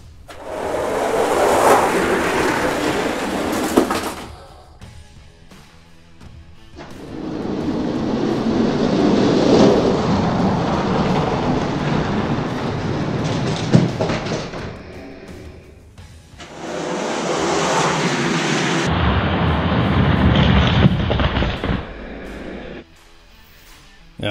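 Die-cast toy monster trucks rolling down an orange plastic race track: a rumbling roll of hard plastic wheels on the track in three stretches of several seconds each, with a few sharp clicks.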